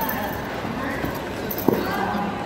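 Background chatter of many voices in a large hall, with one sharp knock near the end from a martial artist's staff routine on the competition mat.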